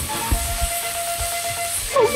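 Steady high hiss of cooking in a steel kadai over a portable gas stove.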